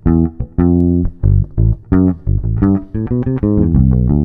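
Electric bass guitar playing a rock riff fingerstyle: a quick run of separate plucked notes, some short and clipped, some held a little longer, with the weight in the low end.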